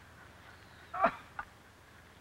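An old man's short falling 'oh' as he lowers himself onto a wooden chair, with a faint tick just after; otherwise a quiet background.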